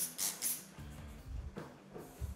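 Trigger spray bottle squirting vinegar onto a paper napkin: three quick hissing squirts, about four a second, that stop about half a second in. Faint background music follows.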